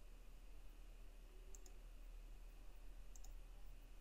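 Two faint computer mouse clicks, about a second and a half apart, over near-silent room tone with a low hum.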